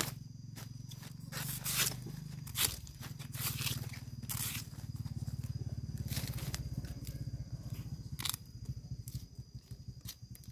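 A knife cutting into and stripping the husks off a fresh bamboo shoot: a sharp click at the start, then a string of short scraping and tearing strokes. A steady low drone runs underneath.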